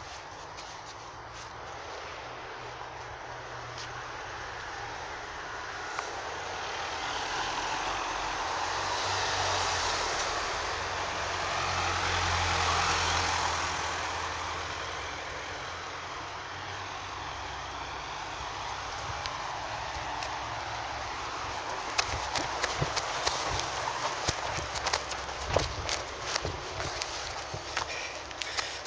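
Road traffic: a motor vehicle passes, its noise swelling to a peak about halfway through and then fading, over a low hum. Near the end comes a run of short, sharp clicks and knocks.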